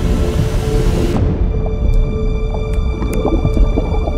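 Tense, suspenseful drama score with a steady low drone, mixed with muffled underwater ambience. A high hiss fades away about a second in, and faint sharp clicks follow at uneven intervals.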